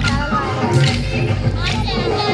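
Loud Telangana folk dance song playing over speakers with a steady low beat, with voices over it and sharp clacks about once a second, fitting kolatam sticks being struck together.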